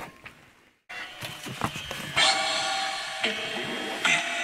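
Fujifilm Instax Mini 40 instant camera taking a photo: a few clicks from the shutter, then the film-ejection motor whirring steadily for about a second as the print is pushed out, trailing off more quietly.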